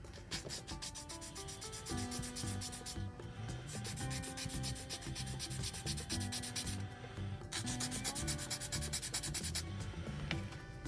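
A 400-grit sanding stick is rubbed in rapid back-and-forth strokes over a small styrene plastic model-kit part. It goes in three runs with short pauses about 3 seconds and 7 seconds in. Background music plays underneath.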